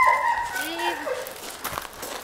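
A dog whining: a high, steady whine breaks off just after the start, followed by a few fainter short whimpers and a couple of light clicks.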